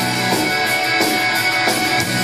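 Live rock band playing loud distorted electric guitar over a steady, driving beat, with no singing.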